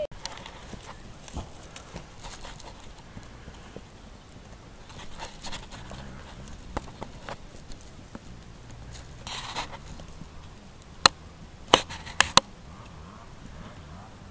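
Faint hoofbeats of a horse cantering on grass, with a few sharp clicks near the end.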